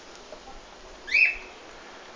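A single short, high-pitched animal call about a second in, rising and then holding briefly.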